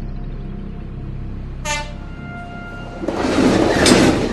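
Tense film score, with a train horn sounding about two seconds in. Then a loud rush of noise from an approaching train builds to its loudest near the end.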